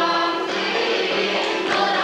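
Armenian folk ensemble performing a traditional wedding song: a chorus of voices singing together over a steady low drone.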